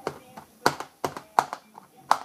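Several sharp taps and clicks, spaced irregularly, loudest about two-thirds of a second and about one and a half seconds in, from hands handling a plastic-covered microwave meal tray.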